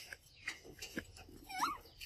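Young macaque giving a short squeak that bends up and down about one and a half seconds in, after a few soft clicks of mango being handled and eaten.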